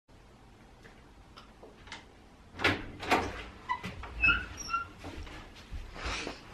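A person moving about a room and getting into place: two loud knocks, then a few short squeaks and light knocks.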